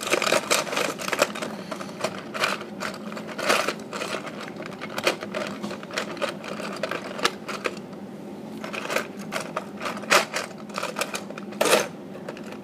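Plastic Lego bricks clicking and clattering as they are handled and pressed together: quick, irregular clicks, sparser for a couple of seconds in the middle.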